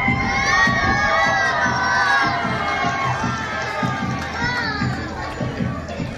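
Many voices shouting and cheering together, loudest over the first few seconds and again briefly later, over music with a steady beat.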